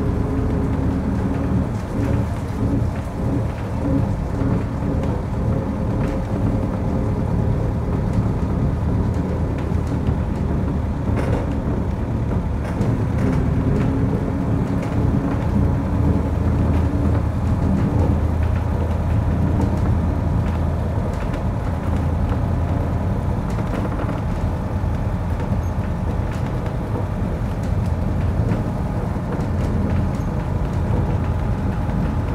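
Vintage bus engine running at steady road speed, a continuous low rumble, with tyre and road noise over it.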